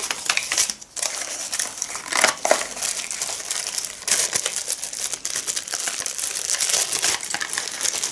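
Packaging being handled and crinkled: a dense, irregular run of crackles and rustles, with a short lull about a second in.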